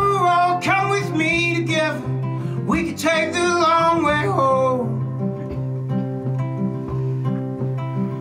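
Acoustic guitar played steadily, with a man singing a long, wavering vocal line over it for about the first half, then the guitar playing on alone.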